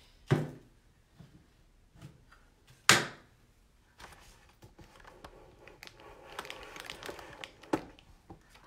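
Painting gear being handled: a sharp knock just after the start and a louder one about three seconds in, then scattered light clicks over a soft rustle, with one more click near the end.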